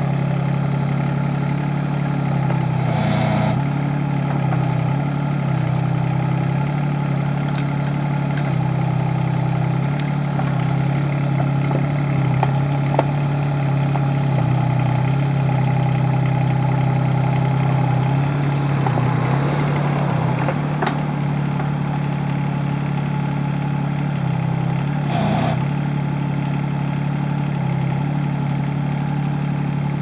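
Kubota KX36-3 mini excavator's diesel engine running steadily while the boom and bucket are worked, digging soil. A few faint clicks and knocks sound over the engine hum.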